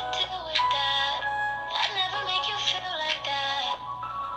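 Pop song with a sung melody playing through a phone speaker: a caller's ringback tune heard while a phone call waits to be answered.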